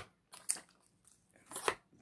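A few brief, soft clicks and rustles from handling, with near quiet between them.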